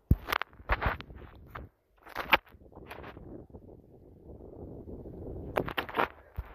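Handling noise from a handheld camera: a few sharp clicks and knocks, then a low rustling that builds for a couple of seconds before a quick cluster of clicks near the end.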